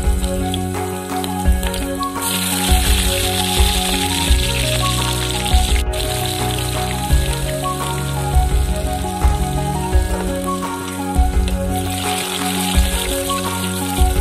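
Hot oil sizzling as sliced green chillies, ginger and garlic fry in a clay pot. The hiss comes in about two seconds in, cuts off suddenly at about six seconds and returns near the end, over background music with a steady beat.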